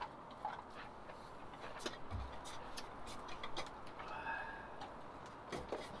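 Quiet background with scattered faint clicks and ticks, and a brief faint tone about four seconds in.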